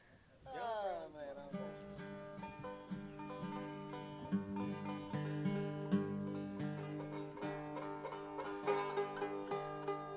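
Five-string banjo being tuned and picked before a tune: about half a second in, a ringing string slides down in pitch as its tuning peg is turned, then single strings are plucked and left to ring at steady pitches, with a guitar alongside.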